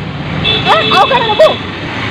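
Street background: a steady low traffic rumble under a person's voice, with a high steady tone that starts about half a second in and lasts about a second.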